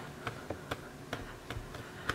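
Faint, scattered light ticks and taps of fingers handling and pressing a small block of polymer clay against a work tile.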